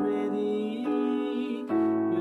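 A man singing while playing held chords on an electronic keyboard; the chord changes twice, about halfway through and again near the end.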